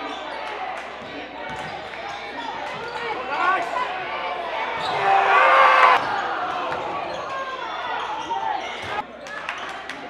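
A basketball dribbling and bouncing on a hardwood gym floor, with players and spectators calling out. The voices are loudest about five to six seconds in.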